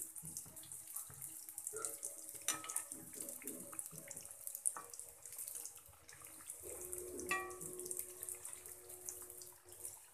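Buns deep-frying in hot oil in an iron kadai: a steady sizzle with fine crackling, and now and then a light tap as a perforated metal skimmer turns them.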